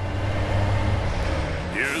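A large truck's engine running with a steady low rumble as it pulls up; a voice starts speaking near the end.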